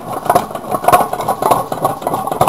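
Homemade tin-can Stirling engine running on its alcohol burner, its moving parts knocking in a quick rhythm of about four to five beats a second.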